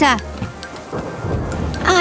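Storm sound effect: steady rain with a low rumble of thunder swelling about a second in.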